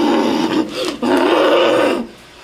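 A woman's voice letting out two long, loud, rough cries, about a second each, the kind of guttural outcry made during a deliverance prayer.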